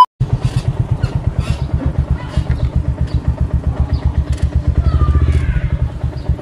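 Motorcycle engine running as the bike is ridden, its exhaust a low, even, rapid pulsing that grows a little louder past the middle.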